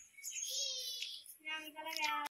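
A brief high, wavering call about half a second in, then a person's drawn-out voice holding one pitch, like a hum or sung vowel, in the second half.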